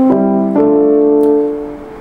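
Keyboard playing sustained chords: one short chord, then a second held chord starting about half a second in that fades toward the end.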